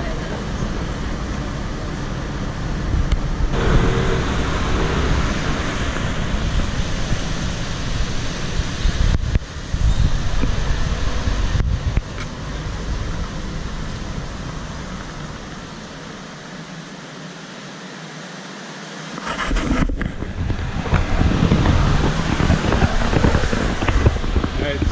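City street noise of traffic with wind on the camera's microphone, broken by several abrupt cuts. It drops quieter for a few seconds about two-thirds through, then comes back louder.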